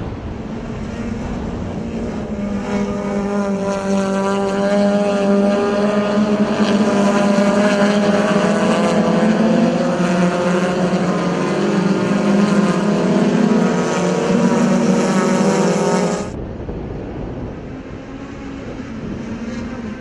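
Touring race cars running at high revs as a pack goes through a corner, a steady engine note of several tones that builds in loudness. About three-quarters of the way through it cuts off suddenly to a quieter engine sound.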